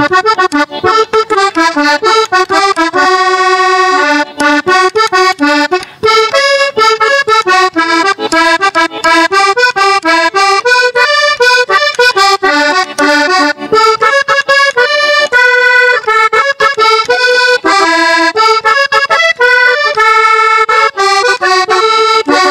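Diatonic button accordion played solo: a lively instrumental passage of a porro, with quick runs of melody notes.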